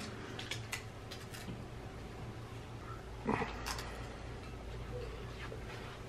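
A few quiet, crisp crunches of Pringles potato crisps being bitten and chewed, with a brief low voice sound about three seconds in.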